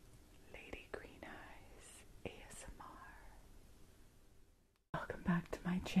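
A woman's soft whispering with a few faint clicks, then, after a brief break about five seconds in, she starts speaking in a soft voice.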